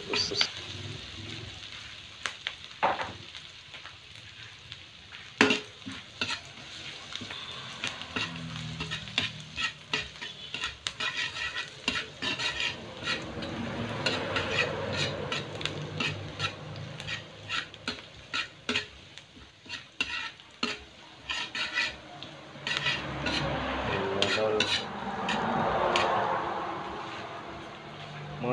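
Chopped garlic, onion and ginger sizzling in a metal wok while a metal spatula stirs them, clicking and scraping against the pan again and again. The sizzle swells louder in the middle and again near the end.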